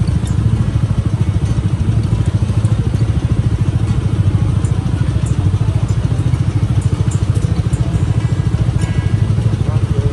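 A motorcycle engine idling steadily close by, with an even, rapid low pulse that does not change.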